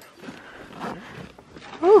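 Faint rustling of nylon tent fabric being handled and gathered, then a woman's voice starts loudly near the end.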